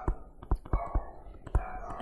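Pen stylus tapping and clicking on a tablet screen while handwriting, about six sharp clicks spaced irregularly, under faint whispering.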